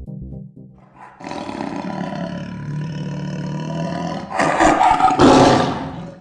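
A fast electronic music beat fades out. It is followed by a long big-cat roar sound effect that swells into two louder surges near the end.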